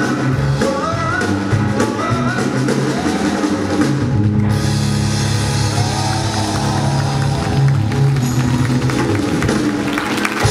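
Live band music with drum kit: a male voice sings wavering phrases over the band for the first few seconds, then the band plays on alone with cymbals washing and bass notes held toward the song's close.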